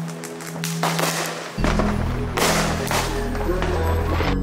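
Firecrackers popping and crackling over music; a heavy bass beat comes in about one and a half seconds in.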